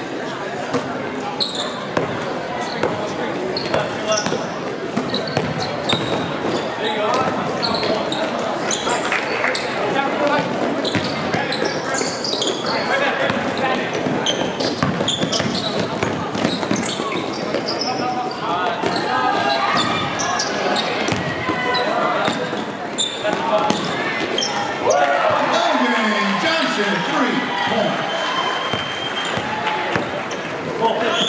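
Basketball game in a gym: a ball bouncing on the court as it is dribbled, with players' and spectators' voices echoing in the hall.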